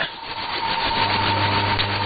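Shortwave radio reception between announcements: steady static hiss with a low hum and a thin, steady whistle from an interfering carrier, no programme audio.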